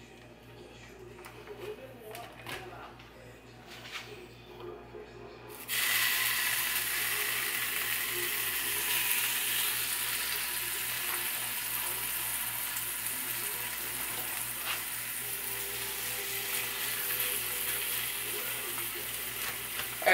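Raw bacon strips laid into a hot, oil-sprayed nonstick frying pan: faint handling clicks at first, then a sudden sizzle about six seconds in as the bacon meets the hot oil, frying steadily from then on.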